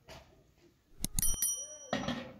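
Metal pot clanking as it is set down on a clay oven: a few sharp knocks about a second in, then a high metallic ringing that hangs on for about half a second.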